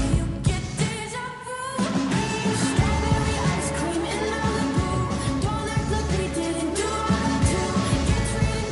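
A pop song with a singing voice over a steady backing. About a second in, the music briefly thins out and sounds filtered before the full mix returns.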